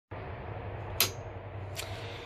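A wall toggle switch flipped with one sharp click about a second in, followed by a fainter click near the end, over a low steady hum.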